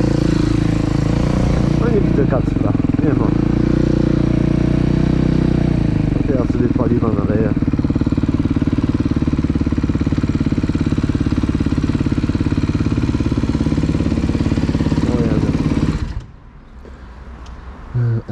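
Dirt bike engine running as the bike is ridden slowly, then settling to a steady idle. It is switched off about sixteen seconds in and cuts out suddenly.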